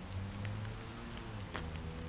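Light rain falling, with a few ticks of raindrops striking the camera, over a steady low hum.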